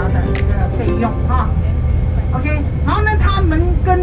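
Steady low rumble of a moving vehicle on the road, heard from inside the cabin. Voices talk over it from about a second in, and background music fades under them at the start.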